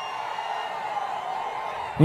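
Low, steady murmur of a large outdoor rally crowd.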